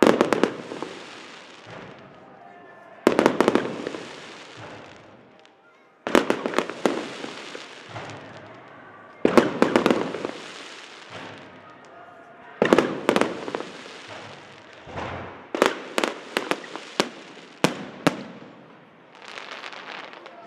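Aerial firework shells bursting, a loud bang about every three seconds, each fading away over a couple of seconds. Near the end comes a quick run of sharp cracks.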